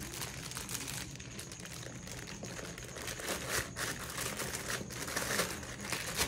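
Clear plastic protective bag around a laptop crinkling as hands handle and shift it, with a few louder rustles in the second half.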